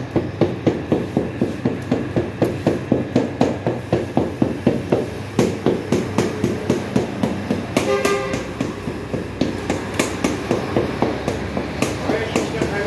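Metal-pronged docking tool stabbing rapidly into raw flatbread dough on a tray, an even run of sharp taps at about four a second, docking the holes into the loaves before baking.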